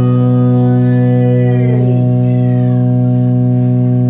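Cole Clark acoustic guitar holding one long chord at an even level, with a bent note sliding down in pitch about halfway through.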